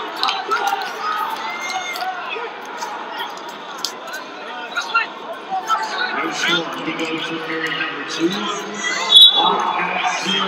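Scattered shouting voices and crowd noise echoing in an arena during a college wrestling bout, with short knocks and slaps from the wrestlers' hand fighting and footwork on the mat.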